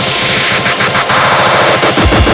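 Electronic dance music build-up: the bass drops out while a rapid rattling roll plays over a dense noise sweep, and the heavy kick and bass come back in at the very end.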